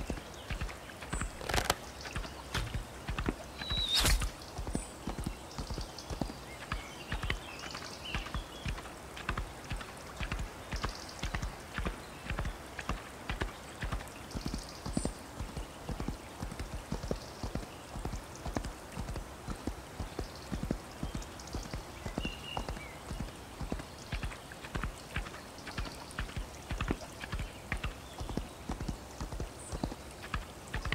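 Horse hooves clip-clopping at a steady pace, about two beats a second. A single sharp crack, the loudest sound, comes about four seconds in.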